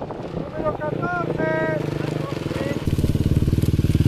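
Off-road rally motorcycle coming in over gravel, its engine growing loud as it closes in and pulls up. From about three seconds in the engine is close, with a fast, even firing pulse.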